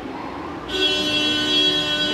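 A steady, held tone rich in overtones starts suddenly just under a second in and holds without changing pitch.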